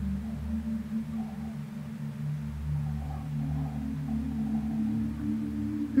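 Soft ambient background music: a steady low drone of held tones with faint wavering notes above it.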